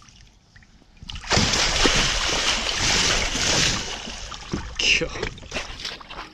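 Heavy splashing and sloshing in shallow water as a large alligator gar is handled at the water's edge. It starts suddenly about a second in, stays loud for some three seconds, then dies down.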